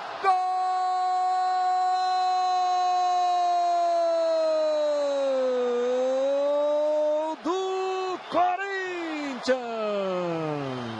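A Brazilian football commentator's drawn-out goal cry, 'Gooool!', held as one long shouted note for about seven seconds that sags a little in pitch and lifts again, followed by a few short shouted words.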